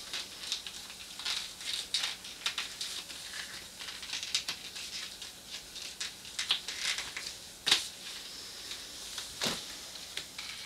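Shiny wetlook catsuit fabric rustling and crinkling as a belt is worked around the waist and fastened, in irregular light scrapes, with two sharper clicks near the end.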